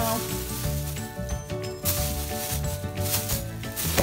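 Background music with held notes and a bass line, over the crinkling of a clear plastic produce bag being handled in two spells, about a second in and again near the end.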